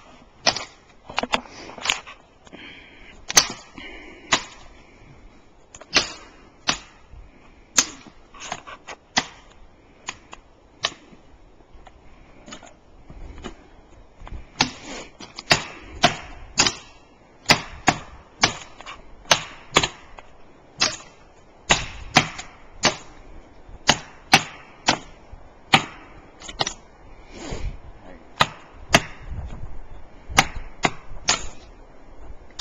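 Repeated chopping strikes of a hand-held tool against a tree: sharp wooden hits, irregular, about one to two a second, some much louder than others.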